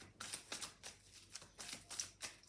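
A deck of oracle cards shuffled by hand: a faint run of short, irregular card-against-card strokes, about four a second.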